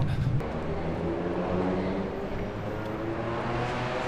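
A motor vehicle's engine droning steadily, with a hiss that swells toward the end as it draws nearer.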